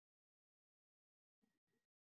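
Near silence: the meeting's audio line is dead quiet, with two very faint, brief sounds about one and a half seconds in.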